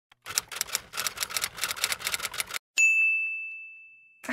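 Typewriter sound effect: rapid key clicks, about eight a second for a little over two seconds, then a single bell ding that rings out and fades away.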